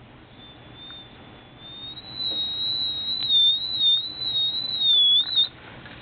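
Vintage JETCO Treasure Hawk metal detector's audio signal as the search coil passes over pennies: a high-pitched, wavering whine that gets louder and higher about two seconds in, then cuts off suddenly shortly before the end.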